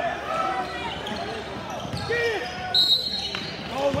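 Sneakers squeaking on a hardwood basketball court during play, short squeaks one after another, with a basketball being dribbled and voices from the bench and crowd in a large gym.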